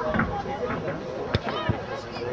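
Untranscribed voices of players and spectators calling out during a rugby match, with one sharp knock a little over halfway through.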